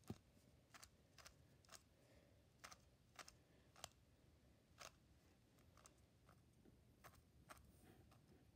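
Faint, irregular clicks of a 3x3 Rubik's cube's layers being turned by hand, about fifteen over several seconds, as the Z-perm algorithm (a last-layer edge permutation) is executed.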